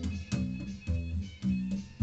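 Homemade upright washtub bass with weed-trimmer line strings, plucked. It plays a run of about five low notes of changing pitch, each with a sharp snap at the attack.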